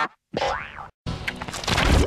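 Cartoon logo sound effects: a short hit, then a springy boing that rises and falls in pitch about half a second in. A busy mix of effects starts about a second in and grows louder near the end.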